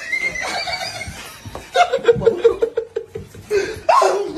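Hearty laughter: a run of quick, rhythmic ha-ha pulses from about halfway through, with a loud falling cry near the end.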